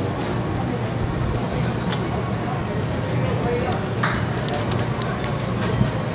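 Steady background hubbub: a low continuous hum under faint, indistinct voices.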